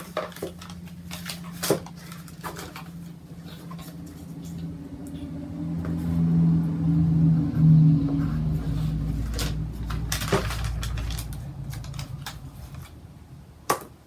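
A low hum swells over several seconds, deepening into a rumble past the middle, then fades away. Over it come a few sharp clicks of plastic-backed game tiles being handled and the scratch of a pencil writing.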